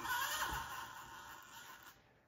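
The small electric motor and geared drivetrain of a 1/24-scale RC rock crawler whining as it creeps up a ledge, the pitch wavering with the throttle, then fading away near the end as the truck stops.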